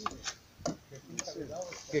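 A drawknife shaving a wooden stick clamped in a wooden shaving horse: about four sharp clicks of the blade catching the wood, roughly half a second apart.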